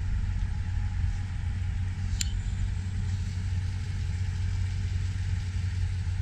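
Toyota Tundra's 5.7-litre V8 idling with a steady low rumble. A brief high click sounds about two seconds in.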